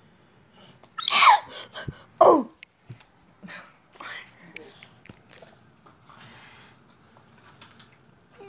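A boy gives two short loud yelps, each falling in pitch, about a second apart, as eye drops are put in his eye; softer rustling and handling noises follow.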